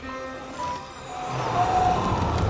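Orchestral film score: a few sustained notes, then a low swell that builds louder over the second second.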